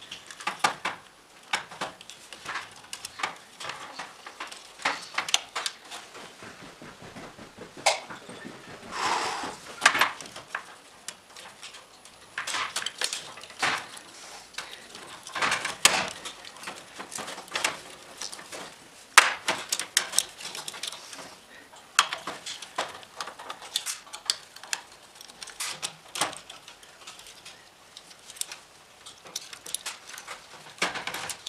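Irregular clicks, taps and rattles of plastic fluorescent-lamp holders and their metal mounting strip being handled and taken apart, with a longer scrape about nine seconds in.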